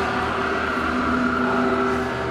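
Electric guitars holding sustained, overlapping drone tones: several steady pitches layered over a low hum, a continuous wall of guitar noise.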